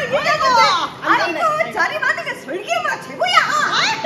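Two women laughing loudly with high-pitched squeals, their voices swooping up and down in pitch.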